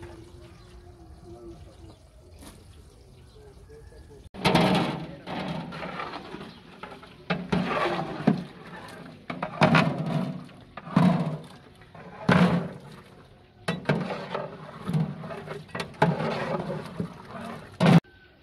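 A faint, low background for the first few seconds, then a man's voice talking in short phrases, about one every second and a half, from about four seconds in.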